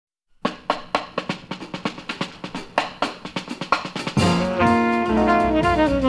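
Opening of a jazz recording: a drum kit plays a short solo break of quick snare hits. About four seconds in, the band comes in with horns holding the melody over it.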